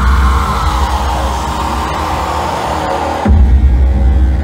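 Loud live electronic noise music through a club PA. A deep bass boom rings on and a noisy wash slowly falls in pitch; a second heavy bass boom hits a little over three seconds in.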